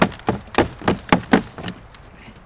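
A quick run of about seven sharp knocks and cracks as a plastic propolis trap, its grid clogged with cold, brittle propolis, is handled and knocked over a plastic bucket. The knocks stop about three-quarters of the way through.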